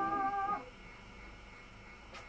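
A male singer holds a high sung note with a slight vibrato. It ends about half a second in with a short upward slide, and faint stage room noise follows.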